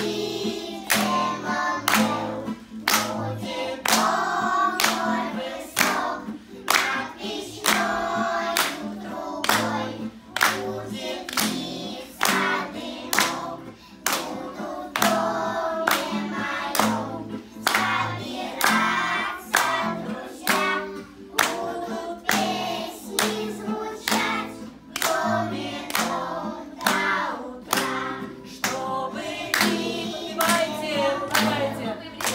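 Group of young children singing a song together to acoustic guitar accompaniment, with a steady sharp beat running under the song.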